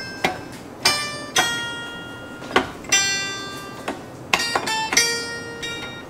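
A taishōgoto, the Japanese keyed zither, played slowly: single plucked notes that ring bright and metallic and fade before the next. Three or four notes come in quick succession a little past halfway.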